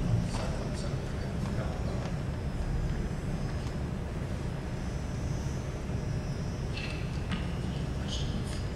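Faint, indistinct speech over a steady low rumble of room noise, with a few words in the first two seconds and again about seven seconds in.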